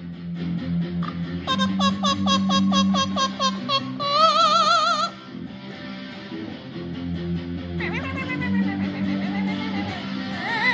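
Distorted Hamer electric guitar playing a rock part, with an Amazon parrot singing along over it: a quick run of high repeated swooping notes, then a wavering held note about four seconds in, and a rising call near the eighth second.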